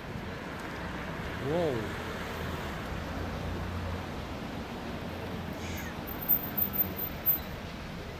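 Town street ambience: steady traffic noise with a car driving past, its low engine hum swelling in the middle. About a second and a half in comes one short call that rises and then falls in pitch, and near the end a few sharp knocks.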